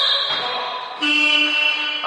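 A high, steady whistle tone, then about a second in the gym's electronic horn sounds a steady buzzing tone for about a second, the signal for a substitution.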